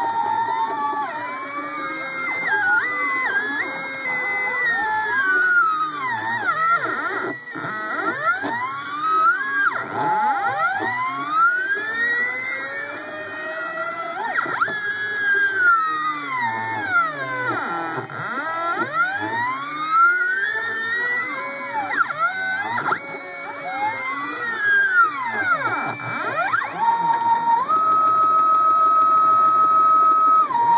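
NEMA 23 stepper motors of a home-built CNC plotter whining as the axes trace curves, several pitches gliding up and down in smooth arcs as each motor speeds up and slows down. Near the end a steady higher tone holds for a few seconds.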